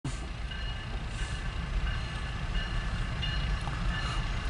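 A steady low engine rumble heard from inside a vehicle cab, with faint thin high tones now and then.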